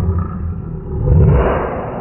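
A lion's roar sound effect with a deep rumble under it. It swells to its loudest a little past a second in, then fades away.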